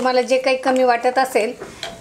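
Mostly a woman talking. Under and after her words, a wooden stirrer works boiling dal in a steel saucepan, with a few light knocks near the end.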